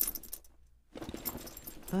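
Keys jangling and small clicking rattles as someone rummages through a bag or pockets, with a brief silent gap about half a second in. A woman's voice starts right at the end.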